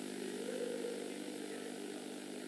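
Steady electrical hum of a microphone and sound system: several even tones held level, under a faint hiss.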